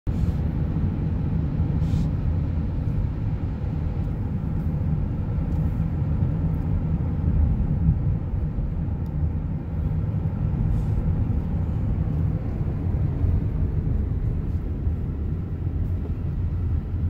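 Steady low rumble of a van driving on the road, engine and tyre noise heard from inside the cabin.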